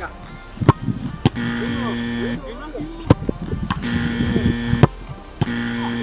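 Footballs kicked one after another, each strike a sharp thump, with added background music of held notes coming and going between the kicks.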